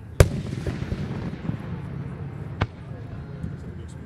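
Aerial firework shells bursting: a sharp bang a fraction of a second in, followed by a wash of sound that fades over about a second, then a second sharp bang just past the middle.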